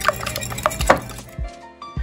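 Wire whisk beating eggs in a glass bowl, a rapid run of wire clinking and scraping against the glass. It stops about a second and a half in, and soft background music carries on.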